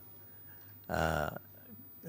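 A man's single short vocal sound, about half a second long, about a second in, in an otherwise quiet pause.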